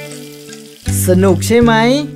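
A held music note dies away. About a second in, a loud hissing rush of cartoon running water comes in, with a wavering, gliding pitched tone over it.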